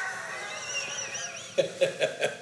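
A man laughing: a long breathy, wheezing laugh that breaks into short gasping bursts near the end.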